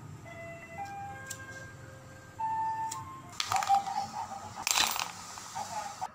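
A short electronic jingle of clean single tones stepping up and down in pitch for about three seconds, followed by two brief noisy swishes.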